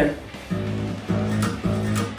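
The newly fitted, not yet tuned sixth (low E) string of a steel-string acoustic guitar plucked a few times, each low note ringing on. It sounds horrible because the string is still out of tune.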